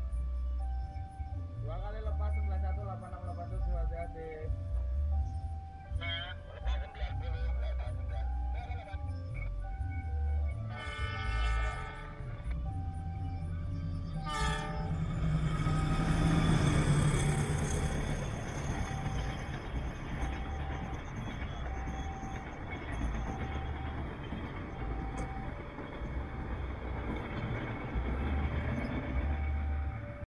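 Level-crossing warning alarm beeping in a steady on-off pattern, with a train horn sounding about eleven seconds in. Then a locomotive-hauled passenger train runs past with a rising rumble of wheels on rails, loudest about 17 seconds in, and keeps rolling by.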